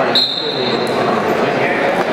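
Referee's whistle: one short, steady, high blast of about three-quarters of a second, heard over the crowd chatter in the arena.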